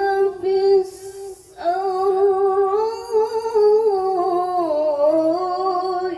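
A woman's voice reciting the Quran in the melodic tilawah style into a microphone: long held notes with ornamented turns in pitch, broken by a quick breath about a second in.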